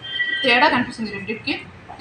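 A woman's voice in short bursts, with a thin high steady tone during the first half second.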